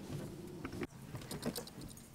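Faint clicks and knocks of a microphone being handled, with a low steady hum that cuts off with a click a little less than a second in, as if the microphone is switched or unplugged.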